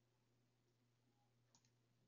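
Near silence, with one very faint click about one and a half seconds in.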